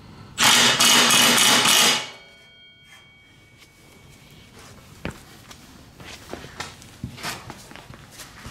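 Cordless impact wrench with an 18 mm socket hammering a new mower blade's bolt tight onto its spindle in one burst of about a second and a half, with a faint metallic ring after it. A few light knocks and clicks follow.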